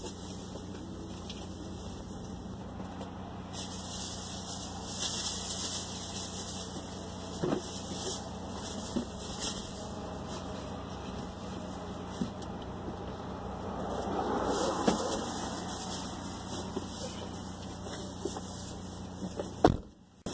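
Steady low hum of a parked car's engine idling, heard inside the cabin with a rear door open. Over it come a few short knocks and a burst of rustling about two-thirds of the way through, as plastic grocery bags are handled on the back seat.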